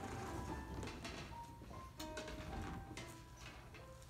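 Quiet upright piano playing scene-change music in short held notes, with several sharp knocks and clicks from metal folding chairs being moved and set down.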